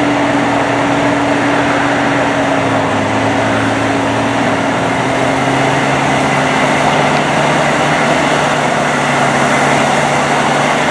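Vehicle engines running at low speed: a steady low hum under an even hiss, the engine pitch drifting slightly partway through.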